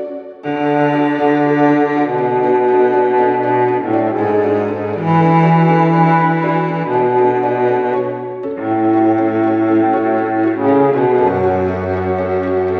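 Instrumental music: slow, held chords over a low bass line, changing every one to two seconds, with a brief break just after the start.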